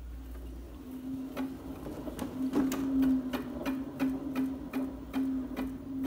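Hand-spun homemade permanent-magnet alternator with neodymium magnets running under load into a step-up transformer: a steady low hum sets in about a second in, with regular ticks two or three times a second from the turning rotor.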